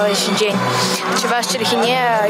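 A young girl speaking.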